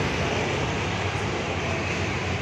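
Street traffic at close range: a motor scooter and cars passing, heard as a steady rumble of engines and tyres.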